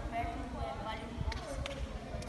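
Children talking faintly, with low thuds and a few short clicks around one and a half seconds in.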